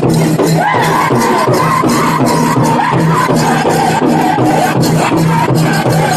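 Live powwow song: a drum group pounding a large drum in a steady, even beat while singers carry a high-pitched song over it, the voices coming in strongly about a second in.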